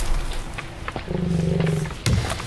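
A low, steady, roar-like groan of just under a second, starting about a second in. It follows the fading thud of an axe chop into a tree trunk.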